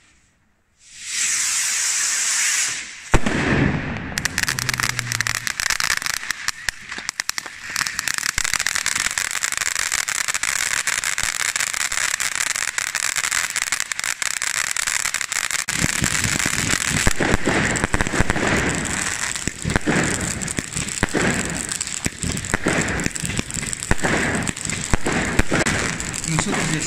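Ground-level fireworks going off: a steady hiss starts about a second in, then from about three seconds a dense run of crackling and sharp cracks that carries on, with heavier bangs joining after about sixteen seconds.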